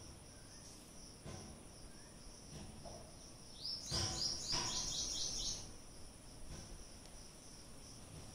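Crickets chirring steadily in a high, pulsing drone. About three and a half seconds in, a small bird gives a rapid run of eight or so quick, high, falling notes lasting about two seconds, with a low thump or two as it begins.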